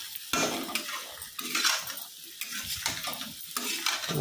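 A spoon stirring and scraping a drumstick-and-potato sabzi in a kadhai in irregular strokes while it fries, with the oil sizzling underneath.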